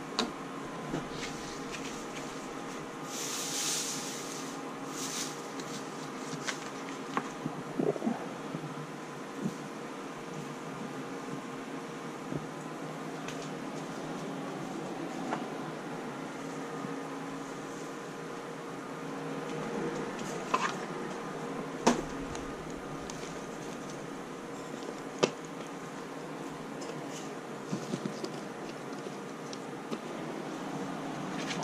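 Steady room hum under scattered short clicks and knocks of plastic and wire cage parts being handled during cage cleaning, with a brief rustle about three to five seconds in.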